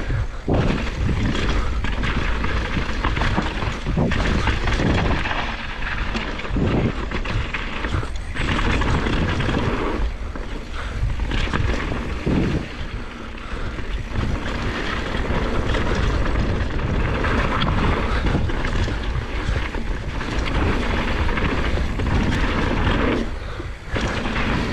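Wind buffeting the camera microphone and mountain bike tyres rolling fast over a dirt and gravel trail, with frequent knocks and rattles from the bike over stones and bumps.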